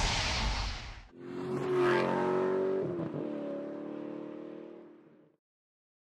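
A loud rushing noise cuts off about a second in. Then a car engine holds steady revs, its pitch dipping briefly near the three-second mark, and fades out to silence a little after five seconds.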